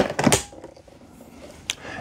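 Plastic solution tank of a Bissell SpinWave spin mop being handled: two sharp clicks at the start, then one more click near the end.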